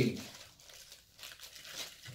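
Faint crinkling of a thin plastic bag as a keyboard wrist rest is slid out of it, in a few soft rustles.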